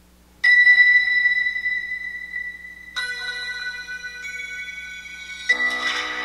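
Soundtrack music of a 4K demo video played through the Lenovo Yoga 2 Pro's built-in speakers. It is a series of ringing struck notes: the first comes sharply about half a second in, the next about three seconds in, and a fuller chord near the end. Each note fades slowly.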